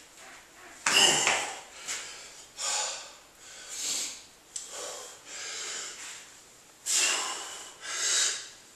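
A man's hard, forceful breathing while straining to bend a steel adjustable wrench by hand: about five sharp blasts of breath roughly a second and a half apart, the loudest about a second in.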